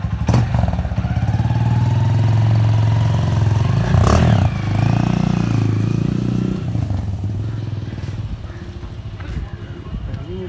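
Hero Karizma ZMR motorcycle's single-cylinder engine revving and pulling away, its pitch rising over the first few seconds. A sharp knock comes about four seconds in, and the engine fades as the bike rides off.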